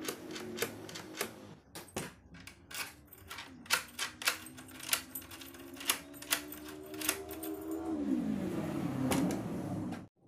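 Mortise door lock and lever handle clicking over and over, the latch bolt snapping in and out as the handle is pressed and the key turned in the cylinder. A steady hum runs underneath and slides down in pitch near the end.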